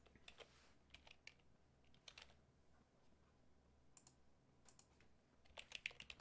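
Near silence from a dropped-out video-call audio feed, with faint, scattered clicks of computer keyboard typing.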